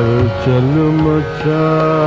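A male Hindustani classical vocalist sings a sustained, wordless vowel that glides between notes. It breaks briefly a little past a second in, over a steady accompanying drone.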